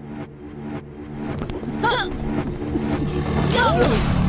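Suspense soundtrack: a pulsing beat about three times a second over a steady low drone, swelling steadily louder, with excited shouts breaking in about halfway and again near the end.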